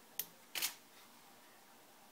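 Camera shutter firing for a water-drop test shot set off by a Pluto Trigger: a sharp click just after the start, then a longer shutter clack about half a second later.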